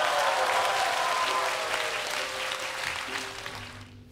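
Crowd applauding, with faint music underneath; the clapping slowly fades away toward the end.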